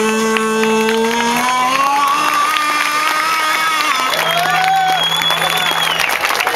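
Man singing long held notes over an acoustic guitar, with a crowd cheering and clapping. His pitch steps up about a second and a half in and drops to a lower held note about four seconds in.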